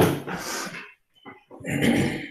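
A man clearing his throat in two rough bursts: the first begins sharply at the start and fades within a second, the second comes about a second and a half later.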